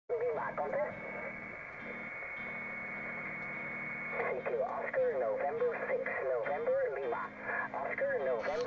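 Amateur HF radio receiver audio: a distorted, narrow-band voice transmission heard through the radio, with a steady whistle that stops about halfway through, after which the voice comes through more strongly.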